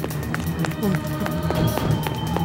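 Quick running footsteps, a string of short sharp steps a few times a second, over a steady background music score.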